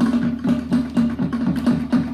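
Samoan drum music: fast, even beats on wooden drums, about six a second, over a steady low tone.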